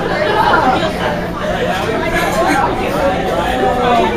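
Several people talking at once in a large room: overlapping, indistinct chatter.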